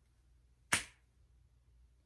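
A single short, sharp snap about two-thirds of a second in, with near silence around it.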